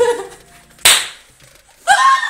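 A single sharp hand clap about a second in, then a woman bursting into loud, high-pitched laughter near the end.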